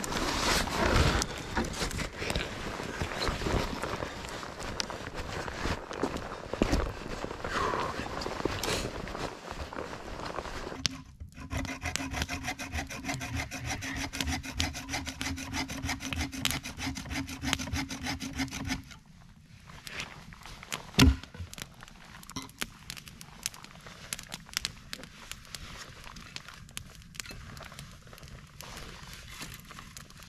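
Firewood being handled and cut: wood rubbing, scraping and sawing. Later a campfire crackles with scattered pops and one sharp knock.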